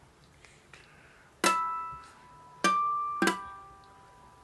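Enya ukulele played slowly fingerstyle: a plucked chord about a second and a half in, then two more close together near the end, each left to ring and fade.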